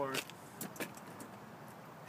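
A few light clicks and rattles of loose plastic drainage pieces being handled inside a car.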